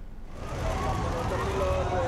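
Outdoor street ambience fading in about half a second in: a low rumble of traffic with indistinct voices in the background.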